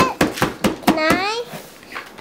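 A young child's high-pitched wordless vocalization, about half a second long near the middle, after a few short sharp sounds.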